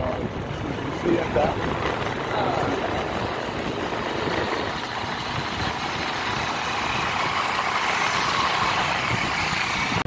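Riding on a motorbike taxi at speed: the engine running under a steady rush of wind and traffic noise, the hiss growing through the second half as a large vehicle passes close alongside.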